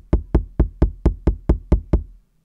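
Rapid, even knocking on a door: about ten knocks, roughly four or five a second, each with a dull low thud, stopping near the end.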